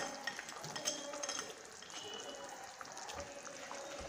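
A spatula stirring onion and capsicum pieces through thick, simmering chilli sauce in a pan: faint wet stirring over a steady low sizzle, with scattered light scrapes and taps of the spatula.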